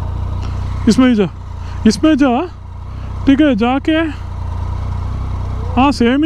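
Motorcycle engine idling steadily with a low, even tone, under a few short bursts of talk.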